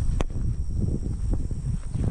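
Uneven low rumbling noise on the camera's microphone, with a single sharp click a moment in.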